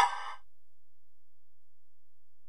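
The tail of a TV station's electronic ident jingle: a bright chord that dies away within half a second. After it there is only a faint low hum.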